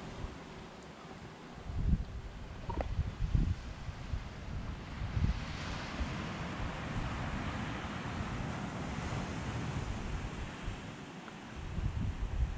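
Wind buffeting the camera microphone in irregular low gusts, over a steady rushing of wind and surf on an open beach.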